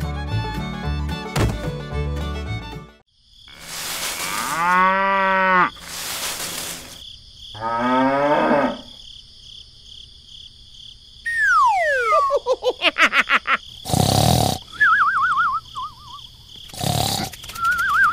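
Background country-style fiddle music that stops about three seconds in, followed by a string of added sound effects: a cow mooing, a second rising call, a long falling whistle, a quick rattle of ticks, two thumps, and a wobbling boing-like tone.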